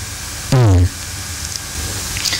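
A single short word in a man's voice, falling in pitch, about half a second in, over a steady background hiss of room or recording noise.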